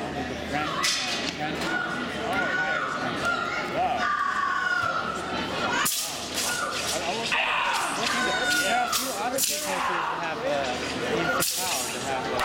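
Sharp, sudden swishes and slaps of a wushu sword routine, a few separate strokes, over a steady bed of crowd chatter in a large gym hall.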